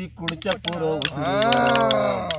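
Sharp clicks of freshwater snail shells being handled and picked open by hand. A voice sounds in one long rising-and-falling call in the second half, louder than the clicks.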